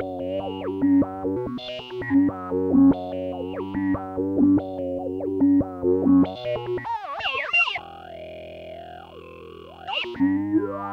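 Electronic music played on a modular synthesizer: pitched, distorted tones with notes that glide up and down. About seven seconds in, a warbling sweep rises and gives way to a quieter held drone with slow bends, and the pattern comes back near the end.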